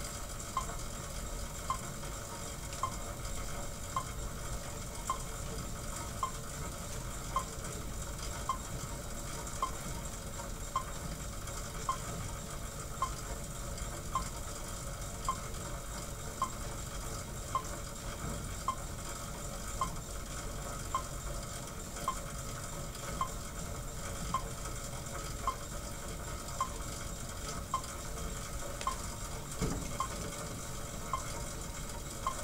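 Monark cycle ergometer pedalled at an easy recovery pace: a steady whirring hiss from the flywheel running under its friction belt, with a faint high tick repeating evenly a little more than once a second.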